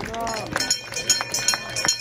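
A small crowd applauding, with scattered, uneven claps after a short vocal call at the start.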